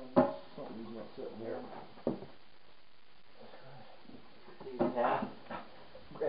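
Men's voices talking in low, unclear snatches, with a sharp knock just after the start, the loudest sound, and a second knock about two seconds in.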